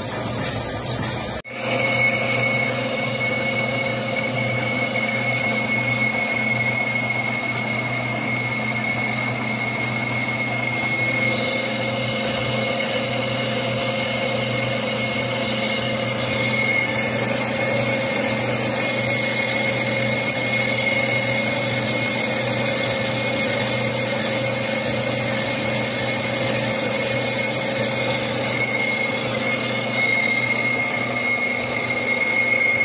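Metal lathe running, turning a stainless steel plate against a cutting tool: a steady motor hum with a steady high-pitched whine over it. The sound breaks off briefly about a second and a half in, then carries on evenly.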